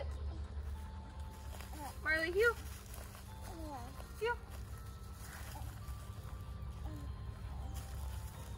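A woman calling a puppy's name as a command, in two short calls about two and four seconds in, over a steady low outdoor rumble.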